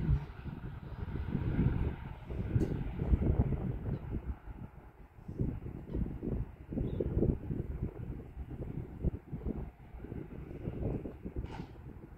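Wind buffeting the microphone: an uneven low rumble that swells and fades in gusts, easing off near the end.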